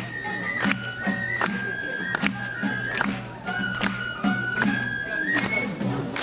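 Japanese festival hayashi: a high bamboo flute plays long held notes that step from pitch to pitch, over a drum struck at a steady beat of a little more than one stroke a second, with crowd voices underneath.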